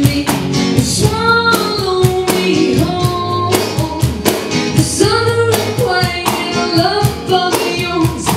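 Live band music: a woman singing into a microphone over electric guitar, bass and drums with a steady beat.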